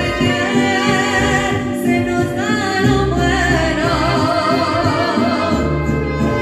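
Woman singing a mariachi song with a wavering vibrato into a microphone, backed by the mariachi band's accompaniment with steady low bass notes.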